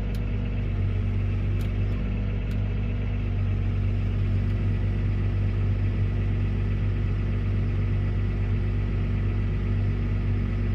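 New Holland T7 tractor's diesel engine running steadily at an even rumble while its hydraulics fold the cultivator wings up. A faint steady high tone sits above the engine.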